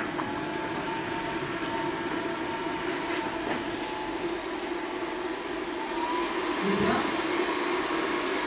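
A steady mechanical hum, unchanging throughout, with a short voice sound near the end.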